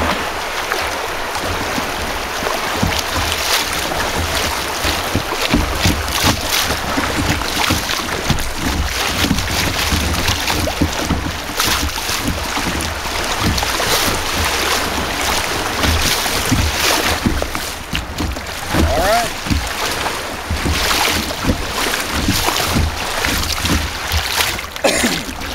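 Kayak running through river rapids: fast water rushing and splashing around the hull, with wind rumbling on the microphone.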